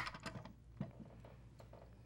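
A sharp knock as a metal hand-cranked pasta machine is set down, followed by faint, light clicks and ticks of handling over the next second.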